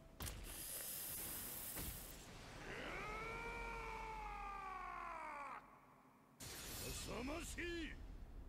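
Anime episode soundtrack played quietly: a bright hissing effect for about two seconds, then one long cry that rises and falls in pitch for about three seconds, a short lull, and brief dialogue near the end.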